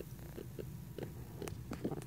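Rhacodactylus leachianus (New Caledonian giant gecko) barking, a few short, faint barks spread over two seconds.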